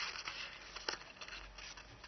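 Faint rustling of folded origami paper being handled and pulled open, with a few small crackles, dying down toward the end.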